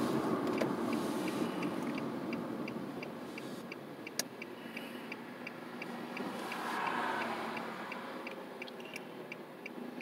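Car turn-signal indicator ticking steadily, about two to three ticks a second, over road noise that fades as the car slows to a stop. One sharp click about four seconds in.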